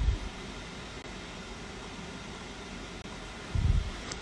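A steady, even hiss of background noise, with two brief low thumps: one at the very start and one about three and a half seconds in.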